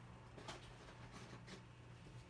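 Near silence: room tone with a low steady hum and a faint click about half a second in.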